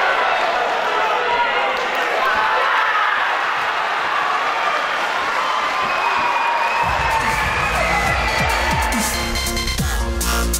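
Cage-side crowd shouting and cheering at the stoppage of an MMA fight. About seven seconds in, electronic music with a heavy bass beat starts up over the cheering.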